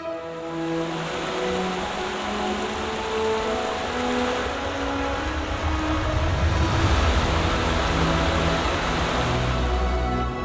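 Steady rush of a rocky forest creek running over stones, heard under background music.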